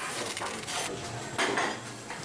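Table knife spreading butter on toast and scraping against a plate, in a few short scraping strokes, the loudest about a second and a half in.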